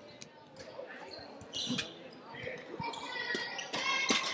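Handball bouncing and thudding on the sports hall floor as play restarts, with scattered short knocks and footfalls, a brief squeak-like burst about a second and a half in, and faint voices near the end.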